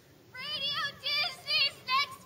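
A young girl's high singing voice, beginning about a third of a second in, with short, wavering notes in a steady rhythm.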